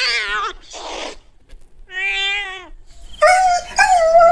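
A cat meowing: two separate meows with a short breathy noise between them. A longer, nearly steady wailing call starts about three seconds in.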